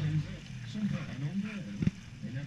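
Small canal tour boat's motor running with a steady low hum, which drops away about half a second in. Low voices carry on after it, and a single sharp knock sounds near the end.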